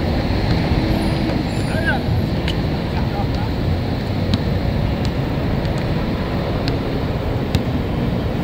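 Steady low wind rumble on the microphone, with a few faint sharp knocks scattered every second or two from a basketball bouncing on the hard court.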